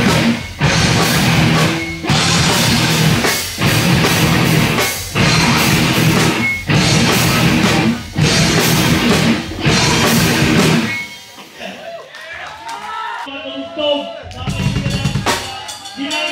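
Hardcore punk band playing live, with distorted guitars, bass and a drum kit, in stop-start accented hits about every second and a half. The band stops about eleven seconds in, voices fill the pause, and the drums come back in near the end.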